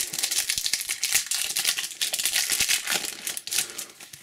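Foil trading-card booster pack crinkling as it is torn open and the cards pulled out, a dense rapid crackle that fades near the end.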